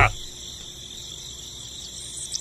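Steady, high-pitched insect chirring in the background, with the tail of a laugh cutting off right at the start.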